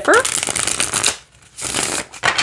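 Ask the Witch tarot deck, a thick and somewhat stiff card stock, being riffle-shuffled: a rapid run of card flicks lasting about a second, a brief pause, then a second shorter burst near the end as the halves are pushed back together.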